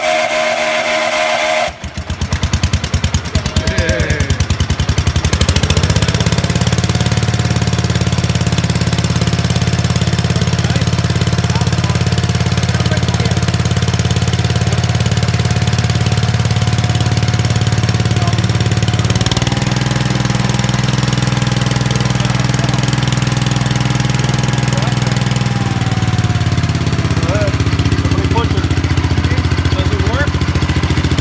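Gravely rider's Kohler 12 hp single-cylinder engine being cranked by the starter, catching about two seconds in and picking up speed over the next few seconds, then running steadily. Its tone changes about two-thirds of the way through and again near the end.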